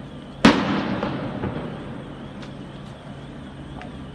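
A single loud explosive bang about half a second in, echoing down the street and dying away over about a second and a half.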